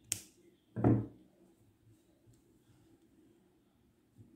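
Handling noises from working a crocheted garment by hand: a sharp click right at the start, then a louder dull thump about a second in, followed by quiet.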